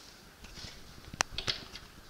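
Faint shuffling, then a few short sharp clicks past the middle from working the engine stand to rotate the bare Ford 300 inline-six short block upside down.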